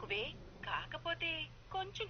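Speech: a voice talking on a phone call, with short pauses between phrases.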